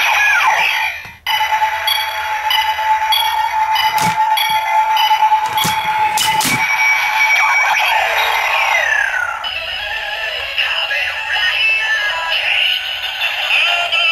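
DX Ziku Driver toy belt playing its electronic standby music and sound effects, with several sharp plastic clicks as the Ride Watches are set and the driver is worked. A falling electronic swoop about two-thirds of the way in leads into a busier electronic passage as the transformation sequence plays.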